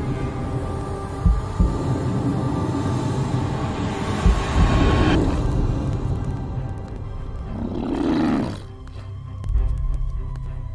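Dark horror film score with held tones and deep booms. About eight seconds in, a swelling roar-like sound builds and cuts off suddenly, followed by another deep boom.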